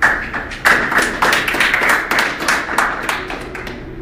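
Several people clapping their hands in an irregular patter of sharp claps, thinning out near the end.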